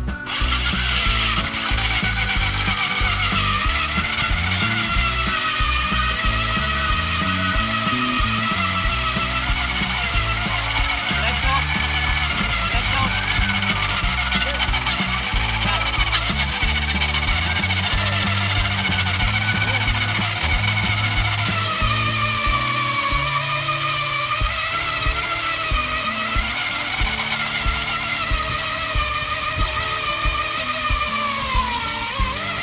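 Corded electric ice auger boring through ice: a steady motor whine whose pitch wavers under the cutting load and sags lower about two-thirds of the way through.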